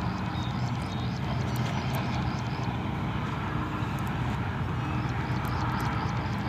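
Steady low outdoor rumble, with a few faint light clicks from small metal puzzle pieces being turned in the fingers.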